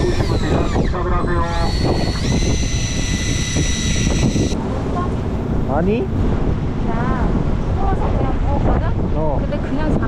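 Wind buffeting the microphone on a fishing boat in rough, choppy sea, a steady low rumble. From about one second in to about four and a half seconds, a high steady whine sounds over it, stepping up in pitch once; short voices come and go.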